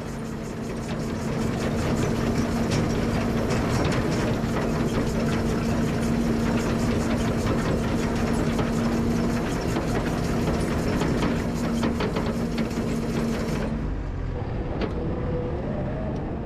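Skid steer running under load with its Rockhound power rake attachment turning through the soil: a steady engine drone with a constant hum and scattered clatter. Near the end the sound turns duller.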